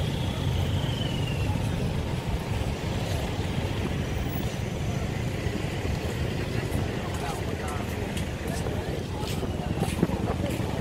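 Road traffic on a busy seafront street: a steady rumble of passing cars and motorbikes, with a whine that rises and falls in the first second or two. A few sharp clicks come near the end.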